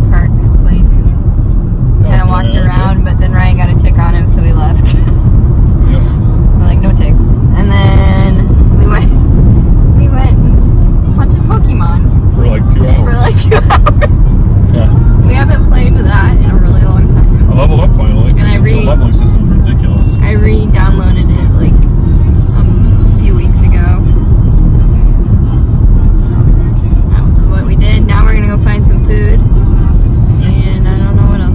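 Steady low road and engine rumble inside a moving car's cabin, with voices and music over it.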